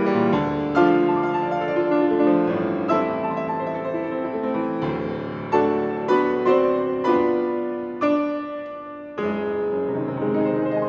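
Steinway grand piano playing a classical piece: a run of notes and chords, then from about halfway a series of sharply struck chords, each ringing and dying away before the next.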